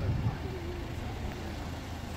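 Street background noise: a steady low rumble with faint voices in the distance, and a brief low bump right at the start.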